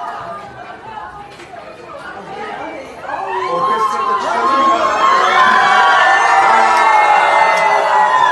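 A crowd of fans cheering and screaming, many high voices overlapping; it swells sharply about three seconds in and stays loud.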